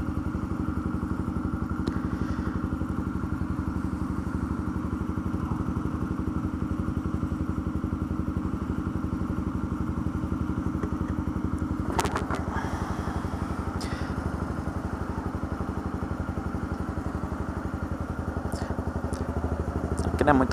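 Honda CB300's single-cylinder engine idling steadily in slow traffic, with one sharp knock about twelve seconds in.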